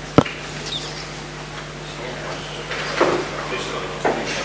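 One sharp knock just after the start, then faint murmur of voices and shuffling.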